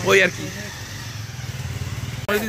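A steady low motor hum, after a short spoken word at the start.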